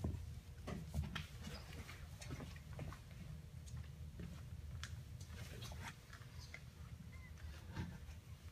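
Faint, scattered light clicks and rustles of hands handling a stripped pistol frame and setting it down on a rubber bench mat, while searching for a small spring that has sprung loose. A steady low hum runs underneath.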